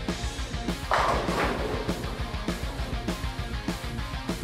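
Bowling pins clattering as a pink urethane bowling ball crashes into the rack about a second in, a brief loud crash that dies away over a second. It plays over background rock music with a steady beat and guitar.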